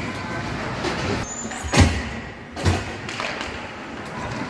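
Two hard knocks a little under a second apart over the steady background noise of an ice hockey game in an indoor rink, the first one louder.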